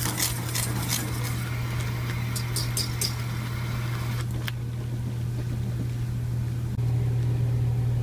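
A wire whisk stirring boiling cornstarch paste in a stainless saucepan, with light clicks against the pan for the first three seconds or so, over a steady low hum.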